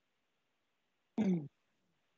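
A person clears their throat once, briefly, about a second in.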